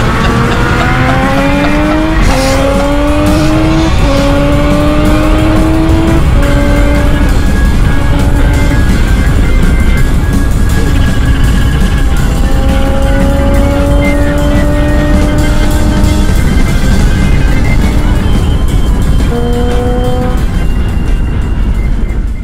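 Triumph Street Triple's three-cylinder engine accelerating hard through several upshifts, its pitch climbing and dropping at each shift about every two seconds, then pulling again more slowly through a long rise, over heavy wind rush.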